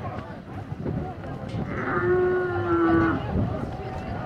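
A young bull bellows once, a steady call of just over a second that drops in pitch as it ends, over crowd chatter and shouts.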